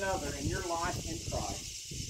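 A man's voice reading aloud, stopping about one and a half seconds in, over a steady high hiss.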